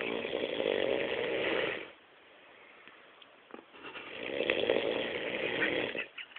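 A man passed out drunk, snoring heavily: two long, rasping snores of about two seconds each, roughly four seconds apart.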